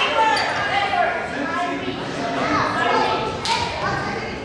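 Players and spectators calling out in an echoing gymnasium, with a single sharp smack of a volleyball being hit about three and a half seconds in.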